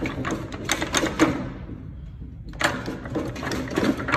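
Steel gears and shift forks of a Volkswagen 0AM seven-speed dual-clutch gearbox clicking and clinking against each other and the aluminium case as the gear clusters are handled. The clicks come in quick clusters, with a short lull about halfway through.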